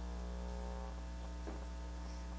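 Steady electrical mains hum from the microphone and sound system: a low drone with faint higher tones over it.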